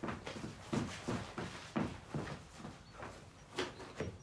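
Footsteps of a person walking through a room: a series of soft, irregular knocks.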